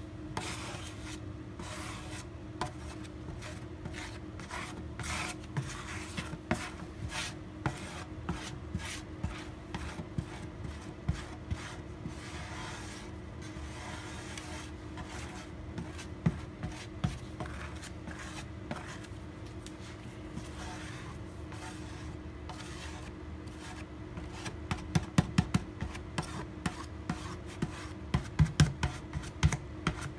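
Plastic squeegee dragged in repeated strokes over a guitar back, working epoxy pore filler into the wood grain, over a faint steady hum. Near the end comes a quick run of sharp clicks and taps, the loudest sounds here.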